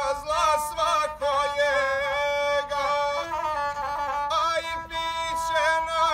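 A guslar singing a Montenegrin epic-style song to the gusle, the single-string bowed folk fiddle. His high voice holds long notes broken by quick ornamental turns, over a lower steady line.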